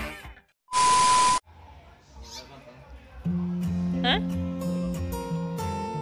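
Background music cuts off, then a short electronic beep over a burst of hiss, an edit sound effect, about a second in. New background music with steady bass notes starts about three seconds in.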